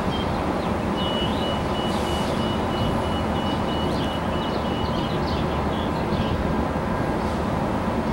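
Stationary commuter passenger train standing at a platform, its equipment idling with a steady low rumble and hum. A thin high tone sounds from about one second in to about five seconds in.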